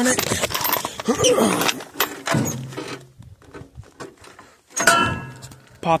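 Clatter and knocks of a person settling onto the seat of an old tractor and taking hold of its controls, with a sharp metal clunk near the end. The engine is not running.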